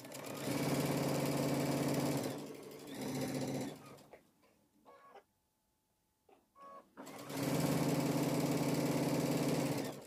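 Electric sewing machine stitching a seam with a steady hum, in three runs: about two seconds at the start, a short burst, then after a pause of a few seconds with faint clicks, a longer run of nearly three seconds near the end.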